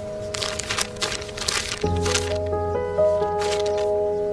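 Paper pages of a notebook being flipped quickly, a run of rustles in the first two seconds and another brief one about three and a half seconds in. Soft background music with long held notes plays underneath.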